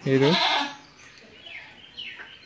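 A goat bleating once, a short rough call of about half a second near the start.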